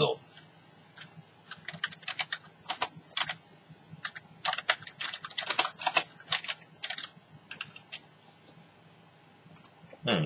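Typing on a computer keyboard under a clear plastic cover: quick, irregular key clicks in short runs, starting about a second in and stopping about two seconds before the end.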